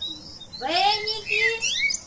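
A high-pitched voice chanting a counting-rhyme magic spell in sliding, sing-song phrases, starting about half a second in.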